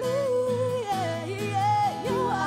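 A woman singing a wordless melody that slides between notes, over steady instrumental accompaniment.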